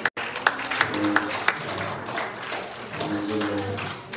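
Hands clapping in a steady rhythm, about three claps a second, over held musical notes in a large room. The sound cuts out for an instant just after the start.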